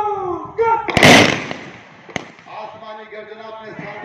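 A drawn-out shouted parade command, then about a second in a loud single volley of rifle fire into the air from the ranks, its echo dying away, with one more lone crack about two seconds in. A band starts playing soon after.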